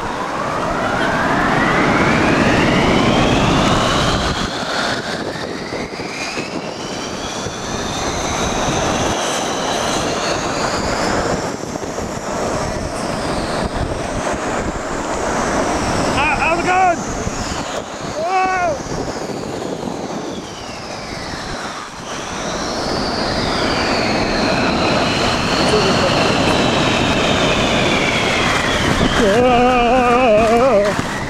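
Snow tube sliding down a groomed tubing lane: a long rushing whoosh of the tube on the snow and wind past the microphone, sweeping up and down in pitch. A couple of short yelps come about halfway through, and voices near the end.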